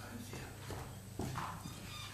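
Faint footsteps of hard-soled shoes as a man walks across the chamber floor to the lectern, with low murmuring voices and room hum in the hall.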